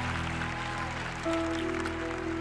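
Soft background music from a live worship band: sustained held notes, with a new chord coming in a little past halfway.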